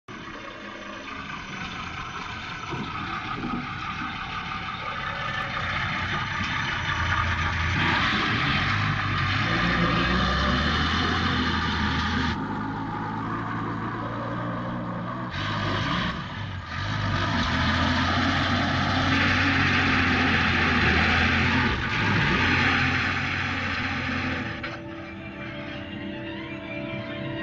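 Heavy truck engine running, getting louder over the first several seconds. The sound drops and shifts abruptly about twelve and sixteen seconds in.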